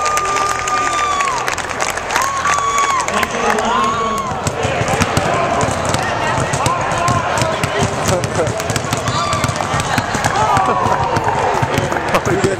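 Basketballs bouncing on a hardwood gym floor, a steady scatter of dribbling thuds, under the voices and calls of a crowded gym.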